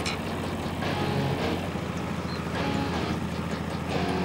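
Engine of a transportable truck-mounted forklift running steadily, with soft background music underneath.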